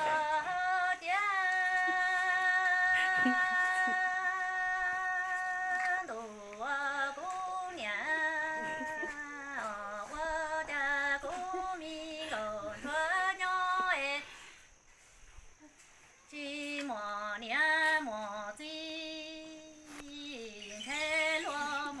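A woman singing Hmong kwv txhiaj, unaccompanied sung poetry, here an orphan's lament (kwv txhiaj ntsuag). It opens on one long held, wavering note of about six seconds, then moves into shorter phrases that slide up and down, with a pause of about two seconds past the middle.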